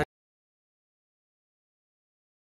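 Silence: the soundtrack goes completely blank after background music cuts off abruptly at the very start.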